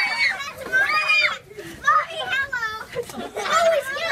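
A group of children's high-pitched voices, calling out and exclaiming in short, excited bursts.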